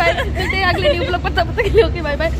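Speech only: voices talking over one another, with a steady low rumble beneath.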